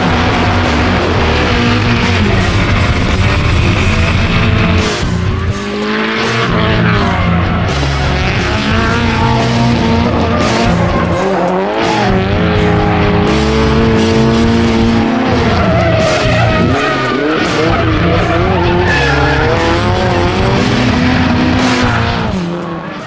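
Nissan 180SX drift car's turbocharged SR20DET four-cylinder revving up and down through a drift, with tyre squeal, mixed over background music with a steady bass line.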